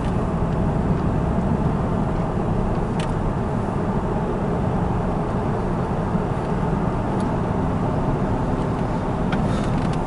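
Steady road and engine noise inside a moving car's cabin, a low even rumble with tyre hiss, and two faint ticks about three and seven seconds in.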